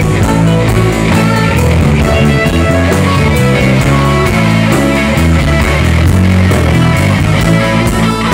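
Live rock band playing loudly without vocals: electric guitars over keyboards, bass and a steady drum beat.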